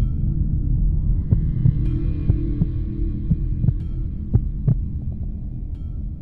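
Dark ambient sound bed: a low droning hum with a series of deep, throbbing thumps at uneven intervals, like a slow heartbeat.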